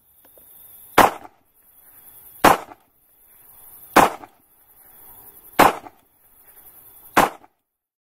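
Outro sound effect: five sharp bangs about one and a half seconds apart, each led in by a rising swell of noise, with a steady high hiss throughout.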